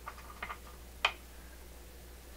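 A few light clicks and taps from a circuit board and its wiring plugs being handled, the sharpest click about a second in.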